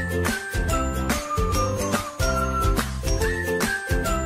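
Indonesian pop song playing: a melody line over a sustained bass and a steady beat.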